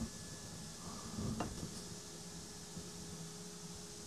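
Faint handling sounds: dry aluminium milling chips tipped out of a glass cylinder onto a table, with a single light clink about a second and a half in, over a low room hum.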